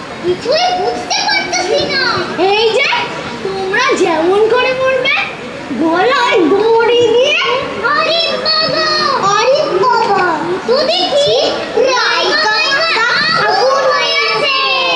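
Several young children talking and calling out at once, their high voices overlapping one another.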